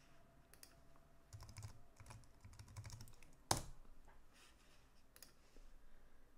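Faint computer keyboard typing: scattered light key clicks, with one sharper keystroke about three and a half seconds in.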